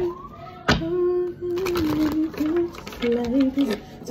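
A woman humming a tune in held, steady notes while handling a deck of tarot cards, with a sharp card snap about three-quarters of a second in and lighter card clicks after.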